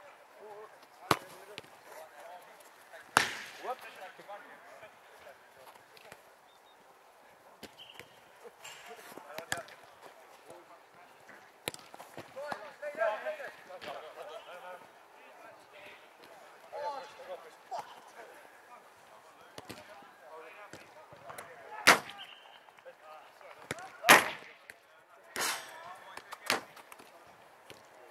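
A football in play on a five-a-side pitch: about six sharp thuds of the ball being struck, spread out, the loudest two near the end, with faint shouts of players in between.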